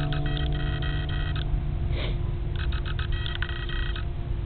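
An acoustic guitar's last chord dying away over a steady low rumble. Two bursts of quick, repeated high chirps come through, one in the first half and one in the second.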